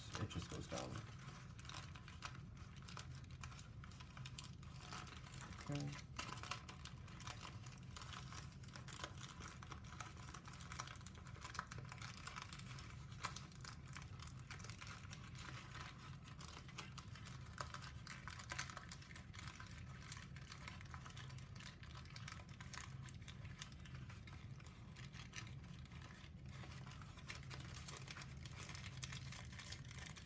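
Brown origami paper rustling and crinkling as hands fold and collapse a many-pleated model: a faint, continuous crackle, with a low steady hum underneath.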